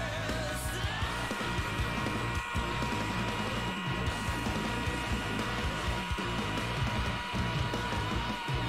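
Progressive rock song playing, with busy drums throughout; about a second in, a long held high note enters and sustains over them.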